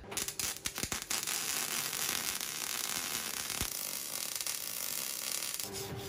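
MIG welder tacking a steel hub onto a steel plate: a few short crackling bursts in the first second, then a steady crackling hiss of the arc for about five seconds. Near the end the arc stops and a wire brush starts scrubbing the fresh weld.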